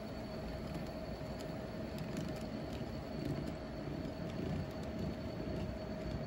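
Model railroad tank cars rolling slowly along the track: a steady low rumble with a steady hum and scattered light clicks of the wheels on the rails.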